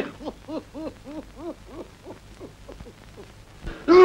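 A quick run of short hooting tones, each rising and falling in pitch, about three a second, fading out after about three seconds.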